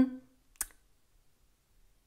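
A single short click about half a second in, from a tarot card deck being handled in the hands.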